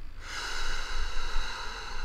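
A long breath drawn through the nose, a soft hiss lasting almost two seconds.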